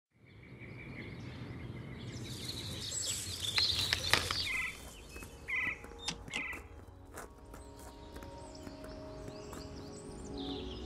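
Countryside ambience with birds chirping and a knock about four seconds in, then a metal gate latch clinking three times in quick succession around the middle, as soft music comes in.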